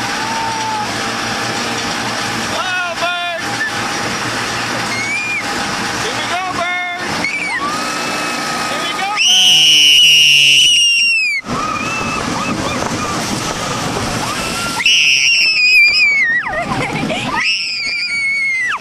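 Rollercoaster riders screaming over the steady noise of the moving ride. A long, very high-pitched scream starts about nine seconds in and lasts about two seconds, and another loud high scream comes about fifteen seconds in, among shorter yells and whoops.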